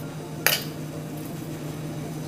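A bowl clinks once against the rim of a kadhai, about half a second in, as ground makhana powder is tipped into the milk. A low steady hum runs underneath.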